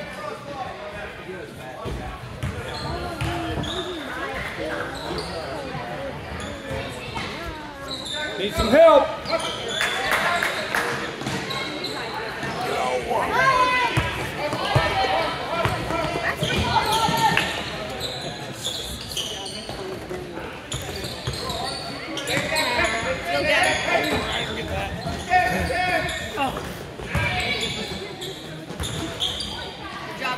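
A basketball bouncing on a gym floor during play, with voices calling out in an echoing hall. The loudest moment is a shout about nine seconds in.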